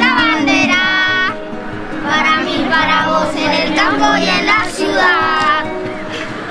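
Children singing together over instrumental music, with long held notes.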